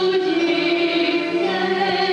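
A group of voices singing together, a slow tune in long held notes.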